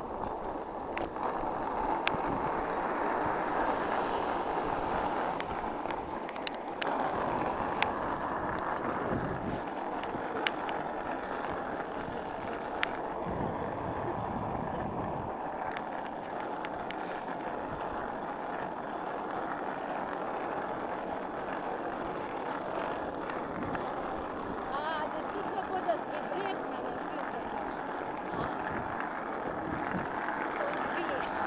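Steady rushing noise of a bicycle ride, wind on the microphone and rolling tyres, with a few sharp clicks in the first half.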